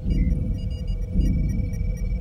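Starship computer console chirping with a quick cluster of beeps as a display comes up, then holding a steady high electronic tone. Underneath runs the low, pulsing hum of the engine room.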